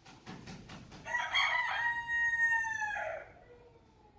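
A rooster crowing at night: a quick flurry of about five wing flaps, then one long crow that falls slightly in pitch as it ends.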